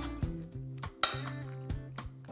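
Metal tongs clinking against a glass mixing bowl a few times as chicken thighs are tossed in a spice marinade.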